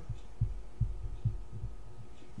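A few soft, low thumps, about two a second, over a faint steady hum: handling noise from objects being moved close to the microphone.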